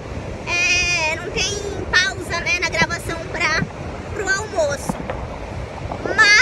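A woman talking in short phrases over a steady rush of wind on the microphone and surf breaking on the shore.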